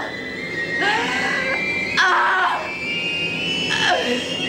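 A woman sobbing and wailing in anguish, three drawn-out cries.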